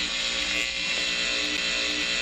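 A steady, buzzing guitar-like chord with heavy hiss, an inserted sound effect for the fault striking in the animation. It holds evenly at one level.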